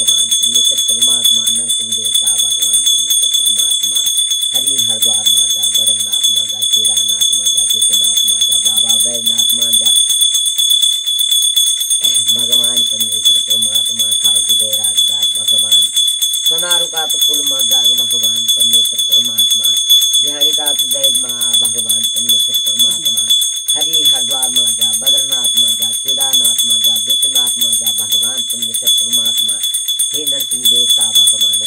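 A small hand bell rung without stopping, its steady high ring running throughout, under a woman's sung chanting of a jagar invocation in long, slowly gliding phrases with short pauses.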